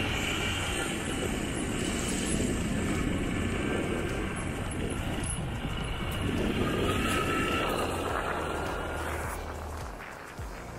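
Motorcycle engine running steadily under way, with a continuous rushing road and wind noise over it, easing off a little near the end.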